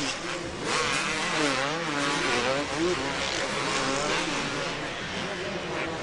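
Motocross race bikes racing on a supercross track, their engines revving up and down with the throttle.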